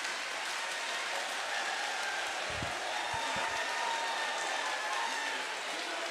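Live audience applauding steadily, with scattered voices from the crowd.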